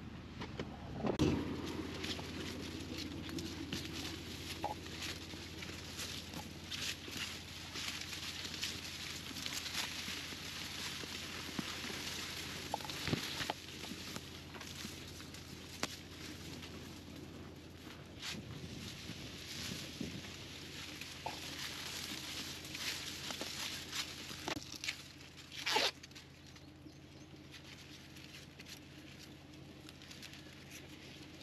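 Footsteps and the rustle and crackle of dry, drought-curled corn leaves brushing against people walking between the stalks, with a thump about a second in and a sharper crackle near the end.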